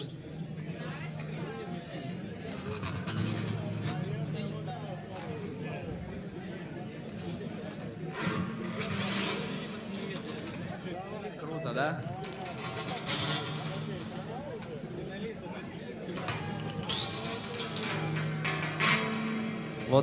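Steel-string acoustic guitar played fingerstyle with an extra piece of string threaded across its strings, a prepared-guitar trick that changes the instrument's tone.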